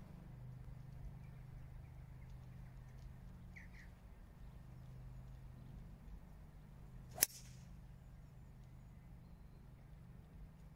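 A 3 wood striking a golf ball off the tee: one sharp, short click about seven seconds in, the only loud sound over a faint background.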